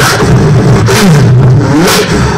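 Loud beatboxing into a microphone: percussive mouth sounds, and a low hummed bass note that slides down in pitch from about a second in.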